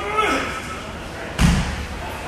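A pair of 50 lb dumbbells dropped from overhead onto the gym floor, making one heavy thud about a second and a half in.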